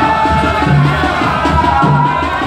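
Traditional Gulf ardah music: drums beating a steady repeating rhythm under long held tones.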